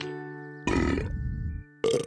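Daddy Pig voicing the dinosaur with a loud, gruff noise about a second long, over soft background music, followed by a shorter vocal sound near the end.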